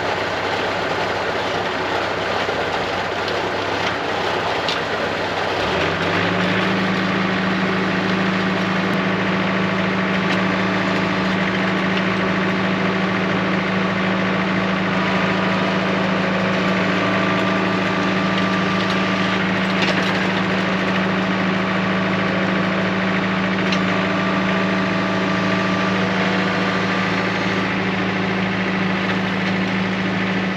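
John Deere compact tractor's diesel engine running, stepping up to a higher steady speed about six seconds in and holding it while its PTO-driven post-hole auger bores a fence-post hole.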